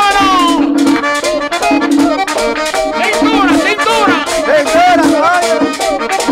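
Live merengue típico instrumental break: a button accordion playing quick melodic runs over repeated chords, driven by a steady scraped rhythm and drum.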